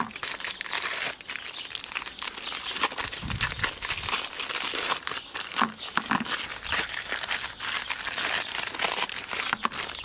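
Plastic ice cream lolly wrappers crinkling and crackling as they are handled and peeled open by hand, a dense irregular run of crackles throughout.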